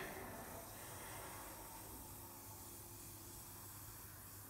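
A faint, steady hiss with a low hum beneath it.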